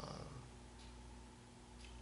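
Near silence: room tone with a steady faint low hum, after a brief faint sound from the speaker right at the start that falls in pitch and fades.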